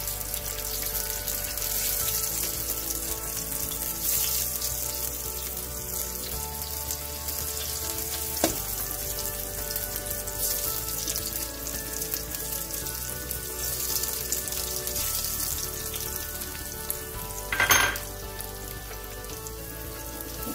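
Boiled potato slices frying in hot oil: a steady sizzle, with a sharp click about eight seconds in and a louder burst of sizzling a couple of seconds before the end.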